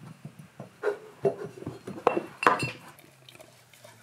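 A husky nosing and licking at a glass jar on a carpet, knocking it so the glass clinks and bumps several times. The loudest knock comes about two and a half seconds in.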